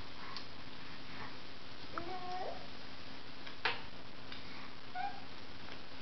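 Baby making a short vocal sound that rises and falls about two seconds in, and a brief higher one near five seconds, with a single sharp click between them.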